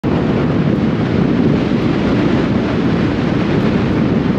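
Steady road and wind noise of a car driving along at speed, with wind buffeting the microphone.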